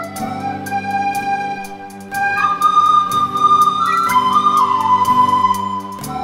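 Recorder ensemble playing a melody together over electronic keyboard accompaniment, with a light regular tick of percussion. About two seconds in the music gets louder and the recorders move up to long held higher notes.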